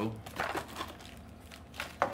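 Cardboard box and plastic packaging rustling and crinkling as a hand rummages inside the box: a few short rustles, about half a second in and again near the end.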